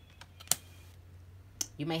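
Tarot cards clicking and tapping against each other and the tabletop as they are handled, with a sharp click about half a second in and a few lighter ones around it. A woman's voice starts near the end.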